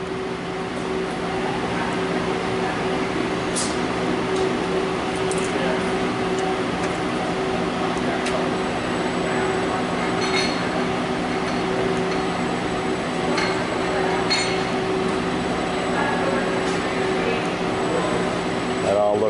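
Industrial robot arm's servo motors humming steadily as the arm moves slowly through its program step by step, with a few light clicks.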